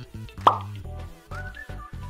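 Upbeat background music with a steady low bass line, and a single loud cartoon 'plop' sound effect about half a second in, its pitch dropping quickly.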